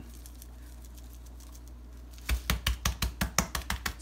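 Low room hum, then from a little over two seconds in a fast run of sharp taps, about seven a second, as a brisket is seasoned with a shaker of coarse salt and black pepper and a gloved hand.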